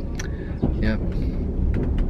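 Steady low rumble of a Soviet-era sleeper carriage, heard from inside the compartment. A short knock comes about half a second in, and a man says a brief word.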